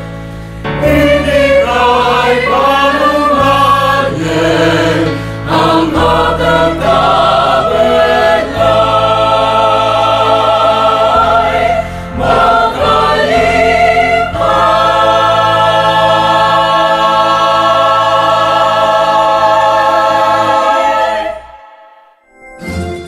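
A mixed choir of men and women singing together, ending on a long held chord that fades out near the end.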